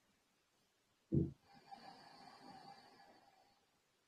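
A person's deep breathing during an abdominal breathing exercise: a short, sharp puff of breath about a second in, then a faint, airy breath lasting about two seconds.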